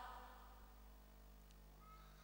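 Near silence: room tone with a faint steady hum, and a faint short tone near the end.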